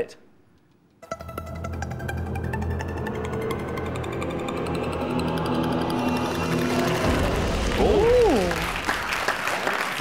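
Game-show score-countdown music with a fast ticking pulse over held tones as the score column drops, ending with a low hit about seven seconds in. A short 'ooh' and audience applause follow near the end.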